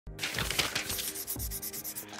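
Rapid, even scratching strokes like a pencil scribbling on paper, about eight or nine a second, with a few low thumps beneath.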